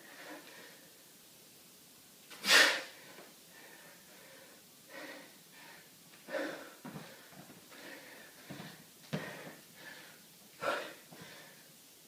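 A man breathing out hard and sharply while swinging a dumbbell, with three loud exhales about four seconds apart, the loudest a little over two seconds in. Quieter breaths and a few soft knocks come in between.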